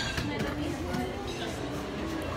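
Busy restaurant ambience: indistinct voices and chatter over a steady low room hum.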